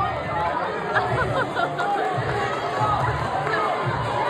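A crowd of people talking and calling out all at once, with music playing underneath.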